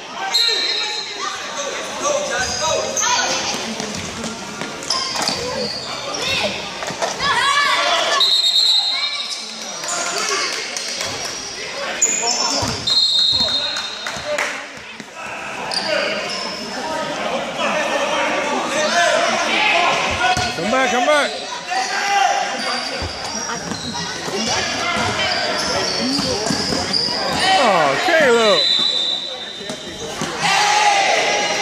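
Basketball game sounds in a reverberant gym: the ball bouncing on the hardwood-style court as it is dribbled, with players and spectators calling out. Brief high squeals break through several times.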